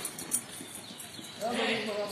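A few sharp footsteps on pavement as the running tails off, then a man's voice calls out briefly about a second and a half in.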